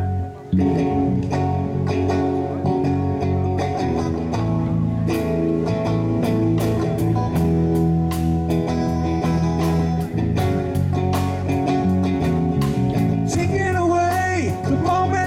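Live band playing an instrumental passage on electric guitar, bass guitar and drum kit. The sound dips briefly about half a second in, then the full band plays steadily, with the drum hits getting sharper and more regular from about five seconds in.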